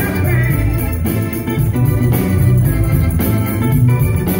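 Live soul band playing an instrumental passage, with keyboard and a steady bass beat to the fore.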